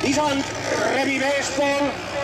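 A man's voice commentating over a loudspeaker, with motorcycle engines underneath as riders climb the hill.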